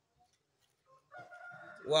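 Near silence for about a second, then a faint, drawn-out pitched call lasting under a second, just before a man's voice starts at the end.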